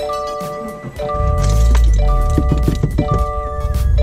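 2015 Subaru WRX's turbocharged flat-four engine starting about a second in on its freshly flashed tune, then idling low and steady. Over it, a chord-like tone repeats about once a second.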